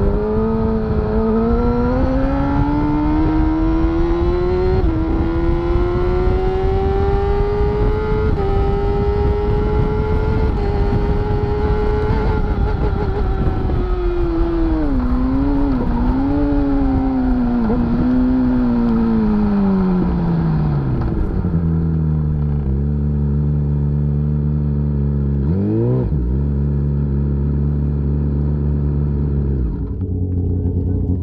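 Onboard sound of a Kawasaki superbike's inline-four engine at high revs, its note holding high and climbing slowly with wind noise, then falling through several downshifts with quick throttle blips as the bike slows. For the last several seconds it idles steadily, with one brief rev about three-quarters of the way through.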